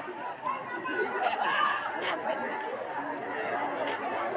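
Overlapping chatter of a group of men talking at once while greeting and shaking hands, with no single clear voice.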